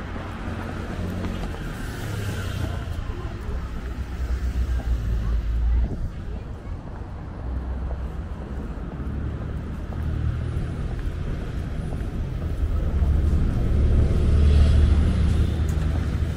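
Cars driving past on a city street, a low rumble that swells twice: about four seconds in, and again near the end. Passersby talking faintly.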